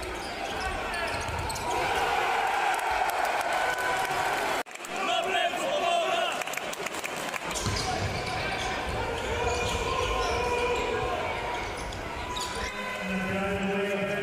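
Live basketball game sound in an indoor arena: the ball bouncing on the court amid players' and spectators' voices echoing in the hall. The sound briefly drops out about five seconds in.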